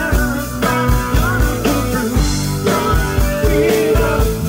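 Live rock band playing loudly: guitars over a drum kit keeping a steady beat, with a man singing.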